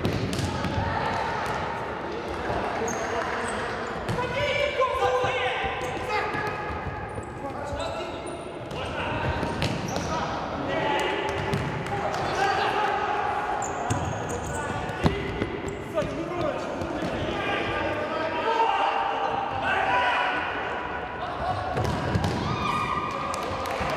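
Futsal players shouting and calling to each other in an echoing gymnasium, with sharp thuds from the ball being kicked on the hard court, the loudest about fifteen seconds in.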